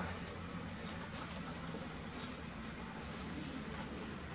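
Desktop PC running as it boots, its fans and CPU cooler giving a steady low hum with a faint hiss, and a few faint ticks.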